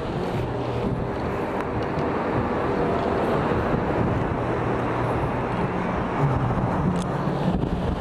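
Wind buffeting the microphone, over the steady wash of Baltic Sea surf breaking on the shore.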